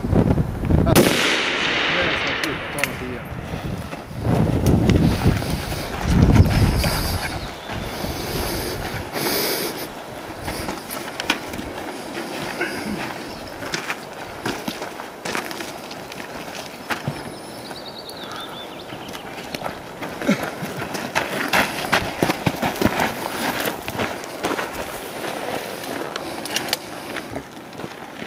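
Rifle shots on a shooting range: a sharp crack about a second in, then many shorter cracks scattered through. Wind gusts buffet the microphone in the first few seconds.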